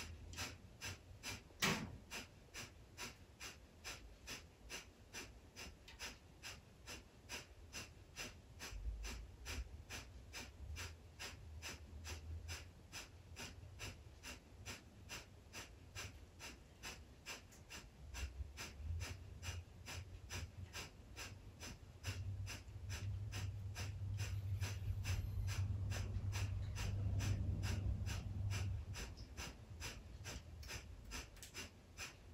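Breath of fire: rapid, rhythmic, forceful breaths through the nose, about two to three sharp exhales a second, kept up steadily. There is a single sharp click about two seconds in, and a low hum swells underneath in the last third.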